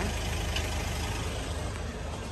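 Steady low rumble of a vehicle engine idling, under an even hiss of outdoor noise.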